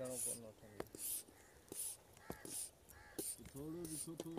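High-pressure hand pump being worked up and down to fill an air rifle with air, giving a sharp hiss of air on each stroke, about one every three-quarters of a second, six times.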